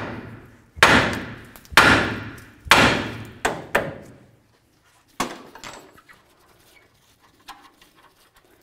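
Hammer blows on a steel steering knuckle: three hard, ringing strikes about a second apart, then two lighter knocks and one more a little later. The blows shock the tapered tie rod end stud loose from the knuckle.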